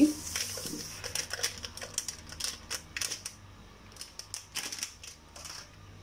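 A sachet of whipped-cream powder crinkling and rustling as it is shaken out into a stainless steel bowl of milk. The irregular crackles come thick for about three seconds, then thin out to a few scattered clicks.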